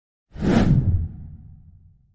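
A whoosh sound effect for an animated logo intro. It starts about a third of a second in, is loud for about half a second, then fades away with a low tail over the next second.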